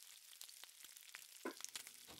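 Faint, steady crackling sizzle of lumps of yeast dough frying in hot oil in a frying pan, with one brief sharper knock about one and a half seconds in.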